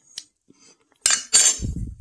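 A metal spoon clinking and scraping against a plate: a faint click near the start, then two short, loud scrapes about a second in, followed by a low thump.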